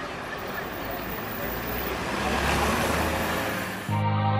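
Rushing hum of distant city traffic. It fades in and swells over the first three seconds, with a low rumble growing underneath.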